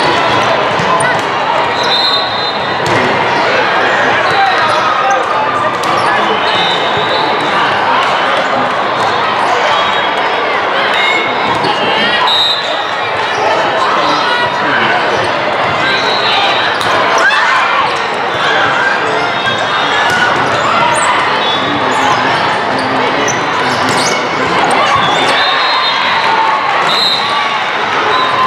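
Busy volleyball tournament hall: a steady babble of many voices from players and spectators across several courts, echoing in the large room, with volleyballs being struck and bouncing and short high squeaks scattered through it.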